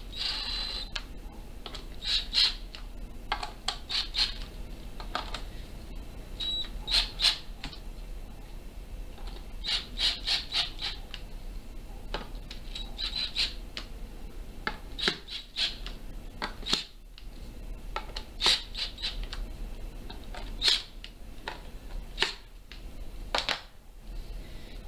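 Cordless drill driving screws down into a wooden banjo rim in many short bursts, one after another, tightening the screws until the rim closes fully on the head.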